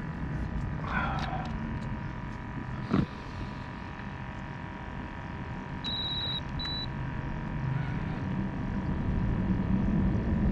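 Steady low rumble with a faint high hum. There is a sharp click about three seconds in and a short run of quick electronic beeps around six seconds in.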